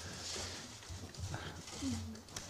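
Quiet meeting-room tone with a low steady hum and faint murmuring voices; a short faint voice sound comes near the end.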